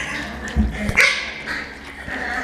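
Young puppies giving short yips and whimpers as they jostle at a bowl of kibble: two sharper cries about a second apart, with a low thump between them.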